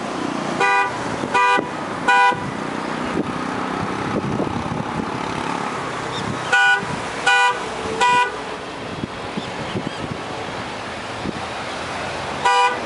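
A vehicle horn sounding in two sets of three short honks, with a pause of about four seconds between the sets, over steady road noise.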